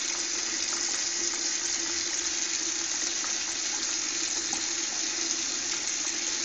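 Bathroom tap running steadily, a constant hiss of water with a faint low hum underneath.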